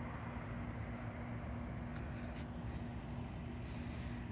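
Steady outdoor background noise: a low rumble with a constant hum underneath, and a few faint brief ticks or rustles.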